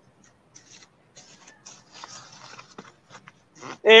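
Garden soil being scraped and pushed over a freshly sown seed row: a run of irregular gritty scratching and rustling. A man starts speaking just before the end.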